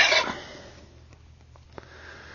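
A few faint, short clicks from hands handling thread at a sewing machine's presser foot and needle plate, over a low steady hum.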